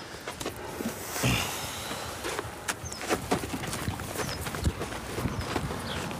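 Donkey's hooves and people's shoes shuffling and scuffing on dry gravelly ground as the donkey moves about and its hind leg is taken up, a run of irregular small knocks and scrapes, with a short hiss about a second in.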